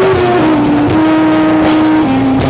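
Stoner rock band playing live at high volume: a long held note that drops slightly in pitch a little under half a second in and then holds, over drums and cymbals.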